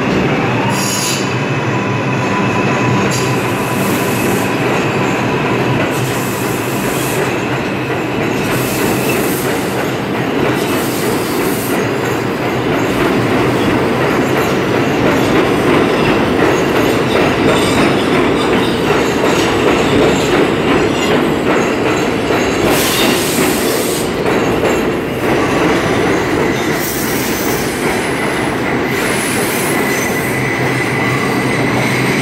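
New York City subway 4 trains of R142-family cars running through an underground station: continuous rumble and wheel noise, with steady whining tones and high-pitched screeching that comes and goes every few seconds. The noise swells in the middle as a train pulls in along the platform.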